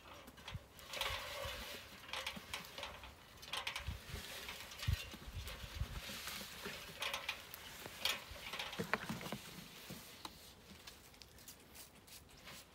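Irregular rustling, scraping and light knocks from a person climbing a ladder and handling fir branches and a cardboard box, with a few dull thumps about five seconds in.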